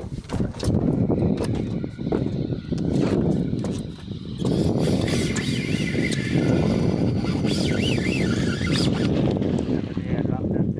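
Wind buffeting the microphone on an open boat, with water moving against the hull, and a few brief wavering high-pitched sounds between about five and nine seconds in.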